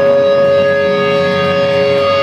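Electric guitar feedback through an amplifier: one loud, steady held tone with overtones, not changing in pitch.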